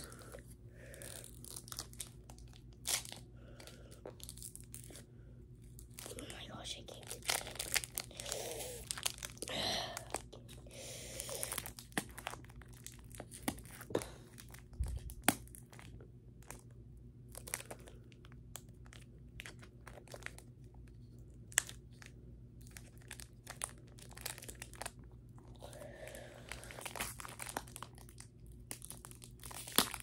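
A trading card booster pack being torn open and handled, its wrapper crackling irregularly with sharp clicks and short tearing sounds.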